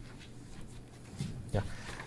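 Quiet room tone in a classroom, with a man's brief 'yeah' near the end.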